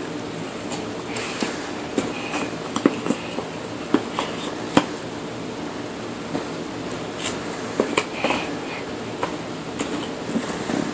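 Puzzle pieces tapping and knocking against an inset puzzle board as a toddler handles and fits them in, a dozen or so short, irregular clicks.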